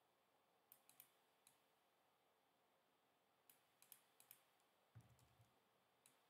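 Faint clicks of a computer keyboard and mouse during copy-and-paste work: a few around the first second, a quick cluster between about three and a half and four and a half seconds in, then a soft thump with a couple of clicks near five seconds.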